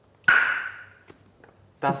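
A single loud tongue click: a woman snapping her tongue off the roof of her mouth, a sharp pop with a short pitched ring after it.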